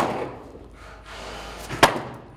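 Sledgehammer blows during demolition: a clattering crash fades out at the start, then comes a single sharp bang just before the end. The blows aren't knocking the piece apart, only shifting it.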